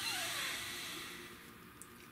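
A person's long breath, a soft hiss that fades away over about a second and a half.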